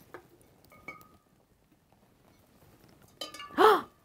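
An egg clinking faintly against a glass jar of water as it goes in, with a short ring about a second in. A woman's brief voiced exclamation follows near the end.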